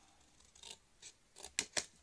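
Small craft scissors snipping red cardstock: a few short, sharp cuts, most of them in the second half, trimming a box flap.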